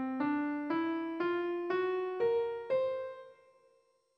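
Piano playing the hexatonic Rynimic scale (scale 1141) upward one note at a time, C, D, E, F, G♭, B♭ and the octave C, about two notes a second. The top note rings on and fades away.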